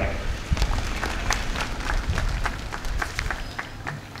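Audience applauding at the end of a speech: scattered hand claps that thin out toward the end.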